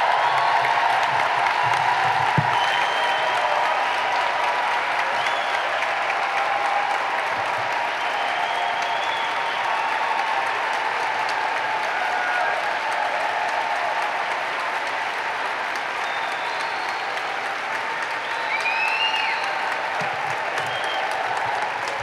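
A large arena audience applauding for a long time without a break, a few short calls rising above the clapping. The applause is loudest at first and eases slightly.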